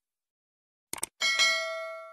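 Subscribe-button sound effect: two quick mouse clicks about a second in, then a bright bell ding that rings on and fades away.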